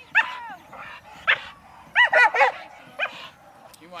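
A dog giving short, high-pitched yips and whines: a single yip, another, then a quick run of four, then one more. It is eager to be let loose to join the lure chase.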